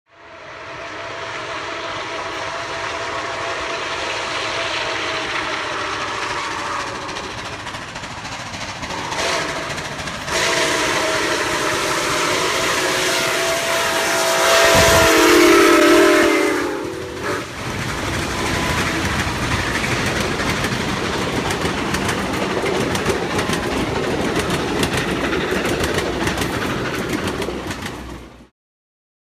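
A steam locomotive's chime whistle sounds in two long blasts. The second blast is loudest and drops in pitch around fifteen seconds in as the engine passes close by. After that comes the steady noise of the train rolling past.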